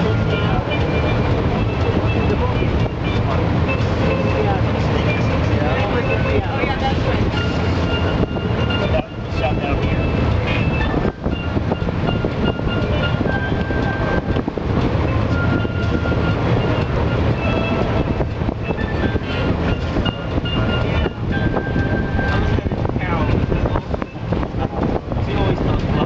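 Amphibious duck tour vehicle under way on the water, its engine giving a steady low drone. Wind noise buffets the microphone.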